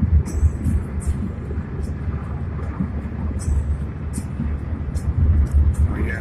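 Steady low road rumble and engine noise inside the cabin of a moving car.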